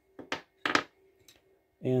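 A few short, light clicks and taps in the first second as two AAA batteries and the plastic multimeter case are handled.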